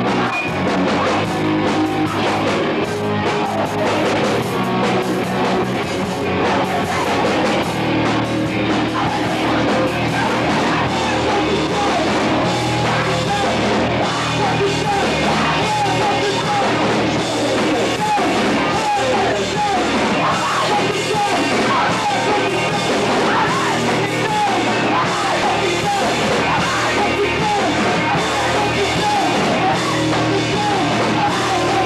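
Rock band playing live, with guitar, loud and without a break.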